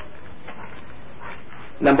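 Steady hiss of a lo-fi lecture recording with a few faint brief sounds, then a man's voice loudly saying "number" near the end.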